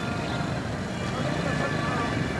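Street noise: indistinct voices of people talking over a low rumble of traffic.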